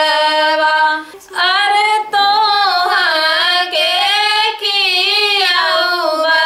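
Two women singing a suhag wedding folk song together, unaccompanied, with long held, wavering notes and a short break for breath about a second in.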